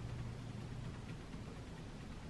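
Quiet room tone with a low steady hum, a little stronger in the first second; no distinct key taps stand out.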